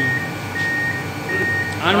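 ITOH Robocut 115 paper cutter's electronic beeper sounding a single high tone in short, evenly spaced beeps, about one every 0.7 s, over a steady low machine hum.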